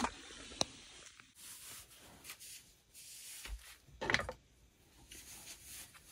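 Faint handling noises: soft rubbing and rustling, with a small click under a second in and a short knock about four seconds in.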